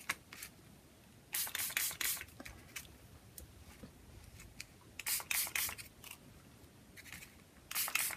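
Small pump-action mist spray bottle of homemade food-colouring ink, pumped in quick succession: two runs of short hisses, about a second and a half in and about five seconds in, and another run beginning just before the end.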